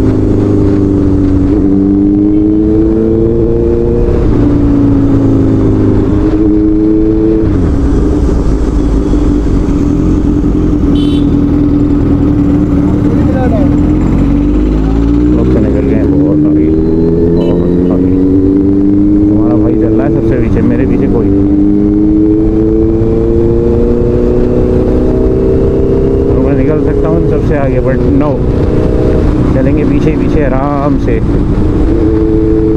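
Honda CBR650F inline-four engine pulling through the gears on the road. Its pitch climbs and drops back at each upshift, three times in the first several seconds. It then sags as the bike slows around the middle, and climbs steadily again through the second half, under a constant low rumble of wind noise.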